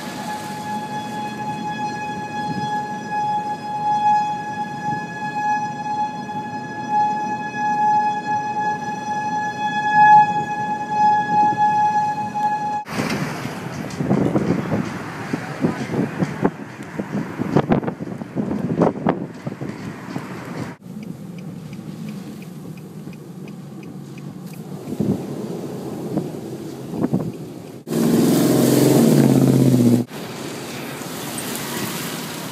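Outdoor tornado warning siren holding a steady wailing tone for about the first thirteen seconds. It then cuts off abruptly into rushing wind with irregular buffeting and knocks, and near the end a loud low rushing noise.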